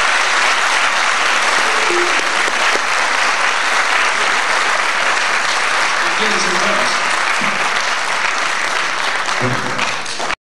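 A large audience applauding steadily, easing off slightly near the end, with a few voices calling out among the clapping.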